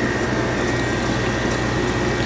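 Lancer soda fountain dispensing a blue fountain drink into a large plastic cup: a steady hiss of flowing liquid with a thin high whine and a low hum.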